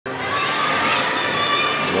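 Crowd shouting and cheering, a steady din of many voices.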